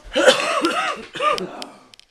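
A man coughing and clearing his throat for over a second, with a few sharp clicks near the end.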